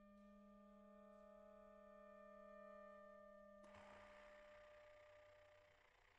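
Saxophone quartet playing very softly: several nearly pure notes held steady together, one low and others higher. A little over halfway a breathy rush of air comes in suddenly and the held notes die away under it.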